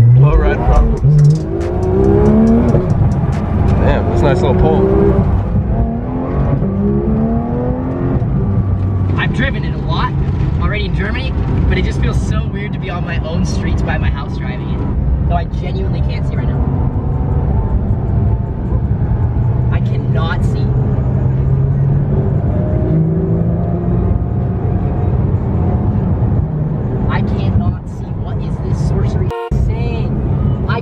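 Porsche GT3 RS's naturally aspirated flat-six, heard from inside the cabin under hard acceleration: the engine's pitch rises several times in quick succession through the first few seconds as it pulls through the gears, then settles to a steadier drone at speed.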